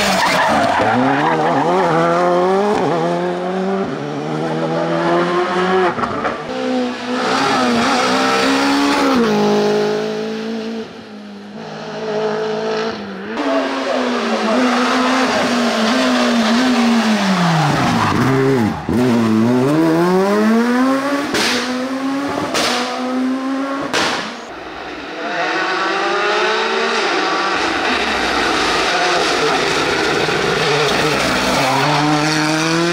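Several rally cars driven hard in turn, one after another: their engines rev up and fall back through repeated gear changes. Near the middle one engine's pitch drops deeply and climbs again, and a few sharp cracks come a little later.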